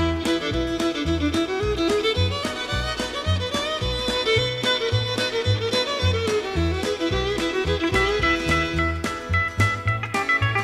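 Instrumental break of a 1968 country song: a fiddle plays the melody over a bass line and a steady beat.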